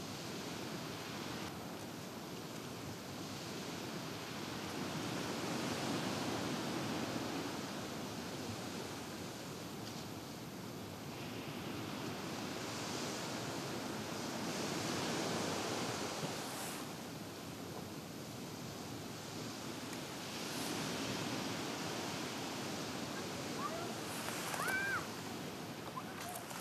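Sea waves breaking on a sandy beach, a steady wash that swells and eases every few seconds.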